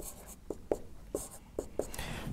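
Marker pen writing on a whiteboard: a run of short strokes and taps, about six in two seconds, with a faint scratchy hiss between them.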